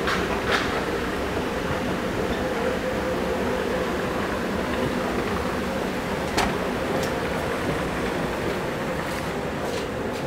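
Steady mechanical rumble with an even hum from a running escalator, with a few faint clicks.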